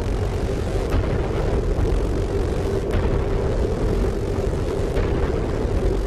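A steady low droning rumble with a held hum through it, broken by a few faint clicks.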